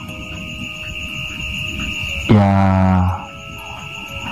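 Background music bed under a storytelling pause: a low drone with a steady high-pitched tone held throughout, swelling slightly over the first two seconds.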